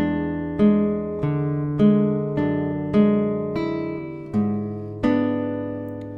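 Nylon-string classical guitar fingerpicked slowly in an arpeggio, a new note plucked a little more than every half second and left to ring over sustained bass notes.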